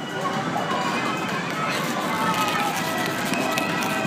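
Carousel music with several steady tones, mixed with indistinct voices of riders and people around the ride.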